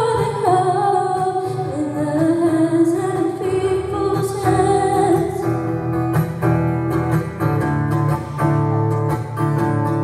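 Acoustic guitar strummed under a wordless sung melody of long held notes that slide from one pitch to the next.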